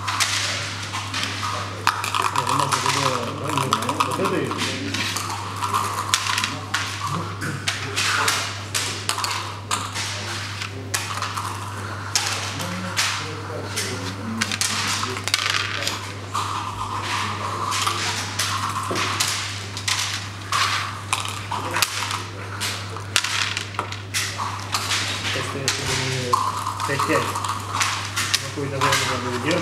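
Backgammon checkers and dice clicking and clacking on a wooden board as checkers are moved and set down and dice are thrown, in frequent irregular taps over a steady low hum.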